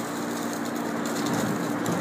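A steady low mechanical hum, like a motor or fan running, over a faint even background noise.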